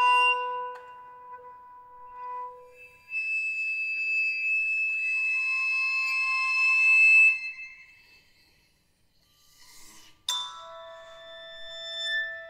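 Contemporary chamber ensemble of piccolo, toy piano, violin, viola, cello and percussion playing: sustained high held tones swell and then fade almost to silence about eight seconds in. About ten seconds in, a sharp struck attack sets off ringing tones.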